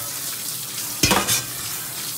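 Tap water running and splashing onto a stainless steel plate and into a steel colander of snails being washed, a steady rushing splash with a short clatter about a second in.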